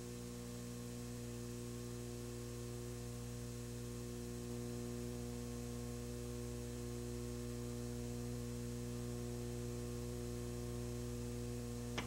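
Steady electrical mains hum with several overtones over faint hiss, carried on the old broadcast recording's audio line.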